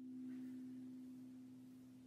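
The last plucked-string chord of a song ringing out: a single steady low tone fading slowly away.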